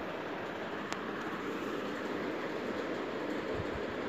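Steady background noise with no speech, and a single sharp click about a second in.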